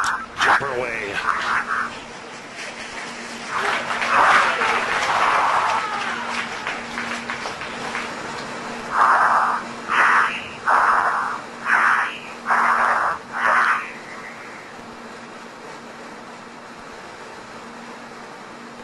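Indistinct human voices calling out, ending in a run of about six short, loud shouts roughly a second apart, over a steady low electrical hum; after that only the hum and hiss remain.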